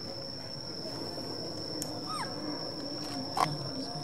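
A baby macaque's short squeak, falling in pitch, about two seconds in, then a sharp click near the end, over a steady high-pitched whine.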